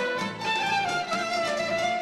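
Traditional Armenian music played by an acoustic ensemble that includes clarinet: a melody line stepping downward over a steady rhythmic accompaniment.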